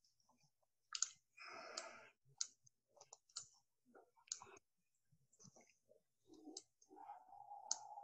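Faint computer mouse clicks, about six sharp ones at irregular intervals, with a brief rustle about a second and a half in and a faint steady hum from about seven seconds in.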